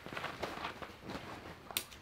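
Ratchet strap being worked by hand: faint, irregular clicks of the ratchet and the handling of the strap, with one sharper click near the end.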